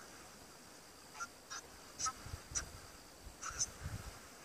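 Geese honking: a series of about six short calls, some in quick pairs, starting about a second in.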